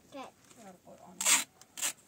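Adhesive tape pulled off a roll in two short rasping strips, the first longer and louder, the second near the end. A child's voice is heard in the first second.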